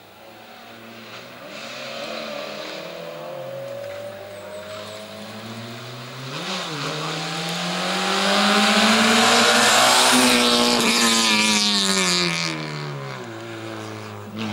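Small Peugeot hatchback race car's engine revved hard through a slalom, its pitch climbing and dropping as the driver accelerates, lifts and changes gear. It grows louder as the car comes up close, peaks for several seconds, then falls away as it drives off.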